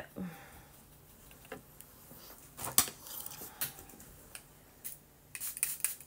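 Scattered light clicks and taps of makeup tools and containers being handled while an eyeshadow brush is wetted: a handful of sharp ticks, the loudest a little under three seconds in, and a quick run of them near the end.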